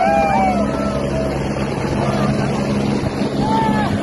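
A helicopter hovers low with a steady engine and rotor drone. People shout and call out over it in long, drawn-out cries.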